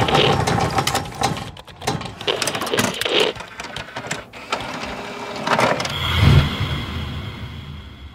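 Sound effects for an animated logo reveal. A rapid run of clicks and whooshes plays as the pieces fly into place, then a deep boom comes about six seconds in and fades out with a faint high ringing tone.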